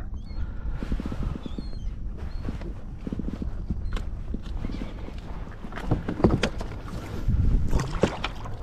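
A caught redfish knocking and scuffing against a plastic kayak deck as it is held between the feet and handled, a run of short knocks with heavier ones about six and seven and a half seconds in, over a steady low rumble.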